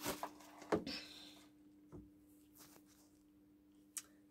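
Electric kiln contactor humming faintly and steadily, one low even tone, with a few soft handling knocks in the first second or so as the controller is moved and set down.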